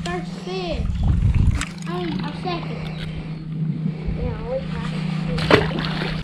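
A splash about a second in as a just-landed bass is let go into the water, over a steady low hum that runs until the end, with a sharp click near the end.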